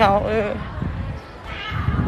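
A person's voice with a short falling utterance at the start and a brief faint bit of talk later, over low rumbling background noise.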